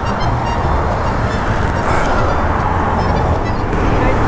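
Steady roadside traffic noise from cars driving past, with background music playing underneath.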